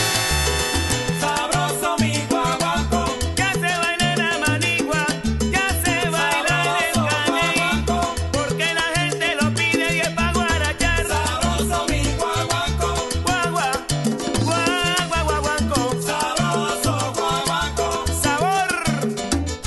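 Salsa band recording in guaguancó style, playing continuously: a repeating bass line under percussion and a wavering melodic lead.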